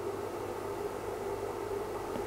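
Steady faint hiss with a low hum underneath: background noise of running electronic bench equipment in a small room.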